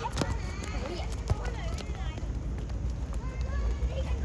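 Scattered calls and shouts from children and adults across an outdoor football court, with running footsteps and a few sharp knocks. A steady low rumble sits underneath.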